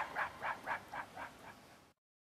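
A short chopped vocal syllable repeated about four times a second as an echoing stutter, growing fainter until it dies away near the end.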